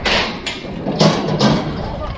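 Mountain bike rolling over a steel drain grating and concrete paving stones: tyre noise and rattling with several sharp knocks as the wheels hit the grate and paver edges.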